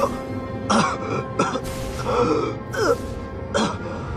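A wounded man coughing and groaning in pain, about five short bursts, several falling in pitch, over sustained background music.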